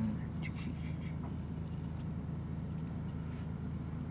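A steady low hum, with a few faint short chirps.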